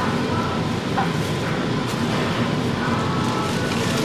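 Steady supermarket background noise: an even, hiss-like room hum with a few faint steady tones in it.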